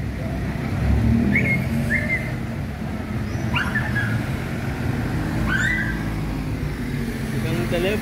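Low, steady street-traffic rumble of idling and passing cars, with a dog giving several short, high yelps between about one and six seconds in.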